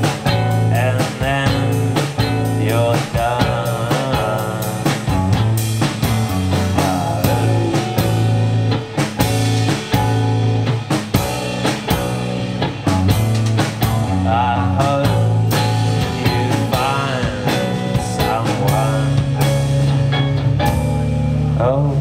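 Live rock band playing: strummed acoustic guitar, electric bass holding low notes and a drum kit keeping a steady beat, with a bending melodic line over the top.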